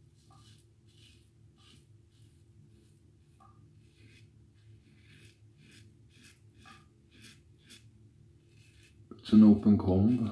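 Double-edge safety razor scraping through lathered beard stubble in short, quiet strokes, about two a second. About nine seconds in, a brief burst of a man's voice, much louder than the strokes.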